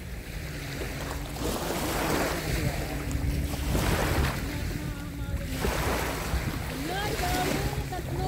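Small waves breaking and washing up a sandy shore in repeated surges, with wind rumbling on the microphone.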